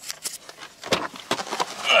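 A run of short clicks and knocks from inside a car as the inner door handle is pulled and the car door unlatches and is pushed open, mixed with the camera being handled.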